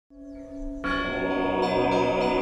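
Intro music opening with church bells: a few faint bell tones, then a full sound of many held tones coming in just under a second in.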